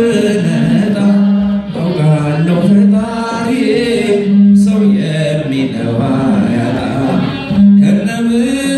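A man's solo voice singing an Ethiopian Orthodox mezmur (spiritual song) through a microphone and PA. He holds long notes that slide from one pitch to the next.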